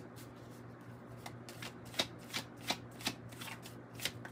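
Deck of tarot/oracle cards being shuffled by hand: a quiet run of short card slaps, two or three a second.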